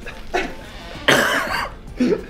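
A person coughing: a short cough about a third of a second in, then a harder cough about a second in, set off by the heat of an extremely spicy chicken wing.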